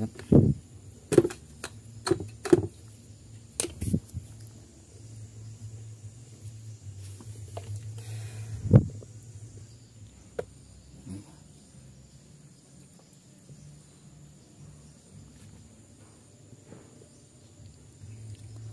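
A series of sharp knocks and taps, about six in the first four seconds and one louder knock near the middle: plastic parts of a stand fan being handled and brushed during cleaning.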